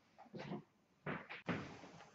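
Short knocks and rustles of things being handled, with a longer hiss starting about one and a half seconds in.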